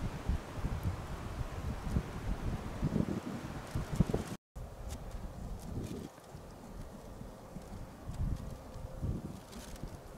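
Low, uneven rumble of wind on the microphone with light rustling, broken by a brief dropout about four and a half seconds in.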